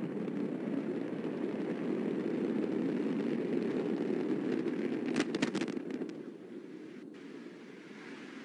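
Antares rocket exploding just after liftoff: a steady deep rumble, with a quick run of sharp crackles about five seconds in, after which the rumble falls away to a lower level.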